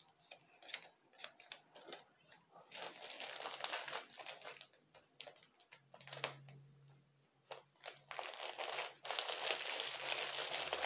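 Clear polypropylene packaging bag crinkling and rustling as hands press and smooth it. The rustling comes in two longer spells, about three seconds in and again near the end, with scattered small crackles between.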